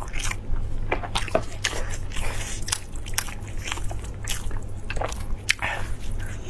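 Close-miked eating of braised meat on the bone: chewing and tearing with frequent short wet clicks and smacks, over a low steady hum.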